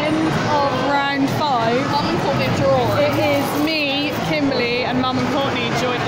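Women's voices talking, words unclear, over steady background noise.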